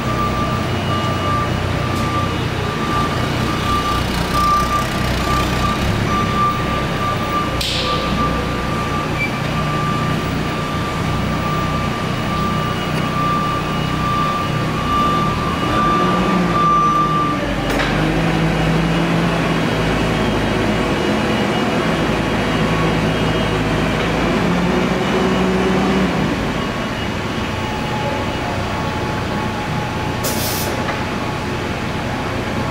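Propane forklift engine running while the truck is driven, with a steady high tone from its reverse alarm that cuts off about halfway through. Then the engine and hydraulic pump hum as the mast is raised, their pitch climbing slightly, until they settle back about four seconds before the end.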